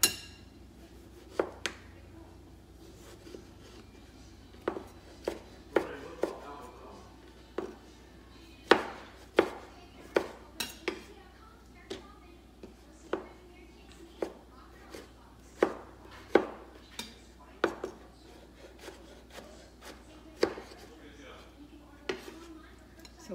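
Chef's knife cutting tomatoes on a wooden cutting board: sharp knocks of the blade against the board at an uneven pace, roughly one or two a second.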